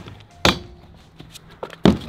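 Stunt scooter knocking against a wooden mini-ramp as it is ridden: two loud thuds, one about half a second in and one near the end, with a few lighter clicks between.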